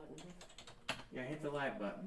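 Computer keyboard typing, a few sharp key clicks, with a short stretch of a man's voice in the second half that is louder than the keys.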